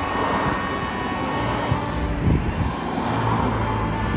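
Road traffic: a motor vehicle's low engine rumble and tyre noise as it passes, while background music fades out in the first second or so.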